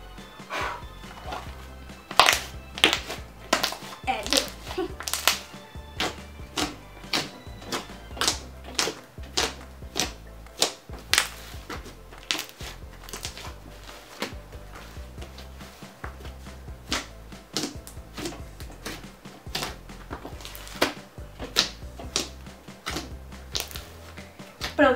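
A large white slime squeezed, stretched and pressed by hand on a tabletop, making many irregular sticky pops and crackles. Background music with a repeating low bass line runs underneath.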